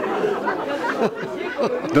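Several people talking over one another: overlapping, indistinct conversation.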